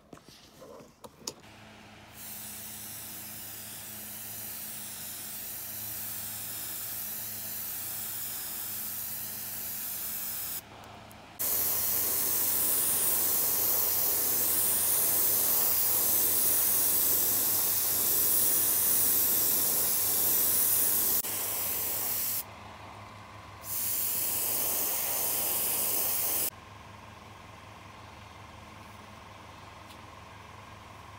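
Airbrush spraying paint onto a crankbait lure body: a steady rush of air and paint mist in three long bursts with short breaks between them. The middle burst is the loudest, and the spraying stops a few seconds before the end, over a steady low hum.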